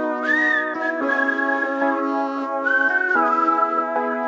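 Background pop music: an instrumental stretch of the song, with a high lead melody that slides between notes over sustained chords.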